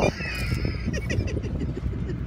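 Two men laughing in quick short bursts inside a car cabin, over the steady low hum of the engine and road.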